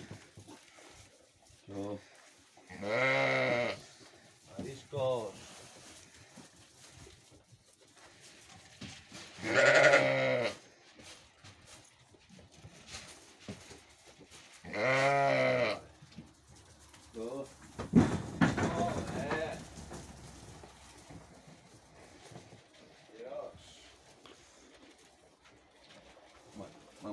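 Latxa sheep bleating: three long, loud bleats about three, ten and fifteen seconds in, with a few shorter bleats between them. A brief clatter comes around eighteen seconds in.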